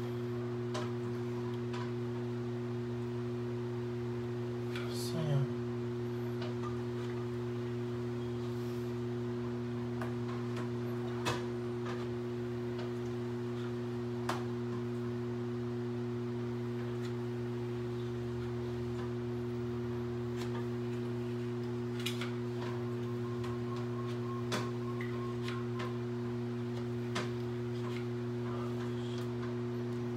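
A steady low electrical hum with two higher overtones, constant in pitch and level, with a few faint clicks now and then.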